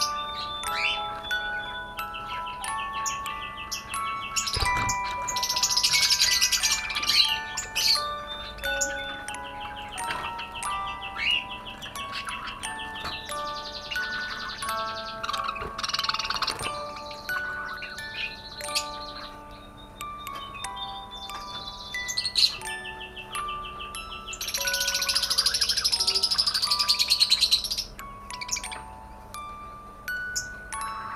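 Budgerigars chattering and warbling in fast high bursts, busiest a few seconds in and again near the end, with scattered single chirps between, over background music of held single notes.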